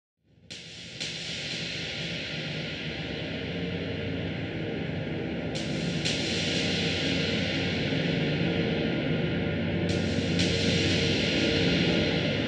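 A steady rushing drone over a low hum that swells slowly louder, with new layers coming in twice in quick succession a few times along the way.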